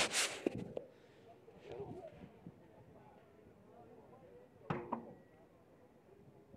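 Faint voices in the background, with a brief rush of noise in the first second and two sharp knocks close together about five seconds in.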